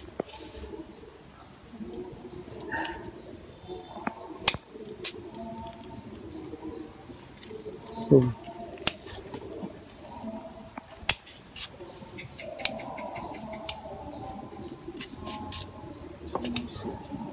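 A series of sharp, separate clicks, one every second or two, over faint background voices. A single short spoken word comes about eight seconds in.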